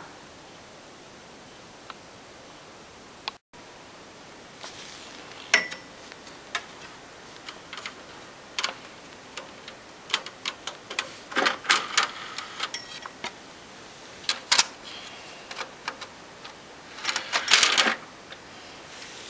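Irregular sharp clicks and short rustles of something being handled, over a steady hiss, with a denser flurry of rustling near the end.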